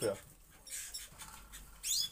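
Caged canaries chirping faintly, with one quick rising chirp near the end.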